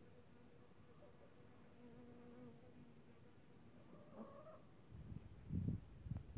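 Honeybee buzzing faintly close by, a low hum that wavers slightly in pitch. Near the end, loud low rumbling bursts on the microphone drown it out.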